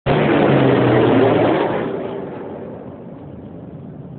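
A firefighting airplane's engines passing low overhead: loud for about the first second and a half, then fading away as the aircraft moves off.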